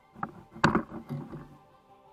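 Background music with a brief burst of knocks and rattles about half a second in, from a rod and spinning reel being worked hard in a kayak as a fish is struck.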